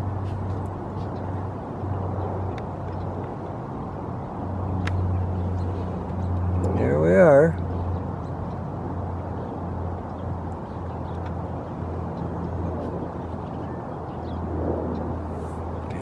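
Steady low rumble of distant road traffic. About seven seconds in comes one short, wavering voice-like call, the loudest sound.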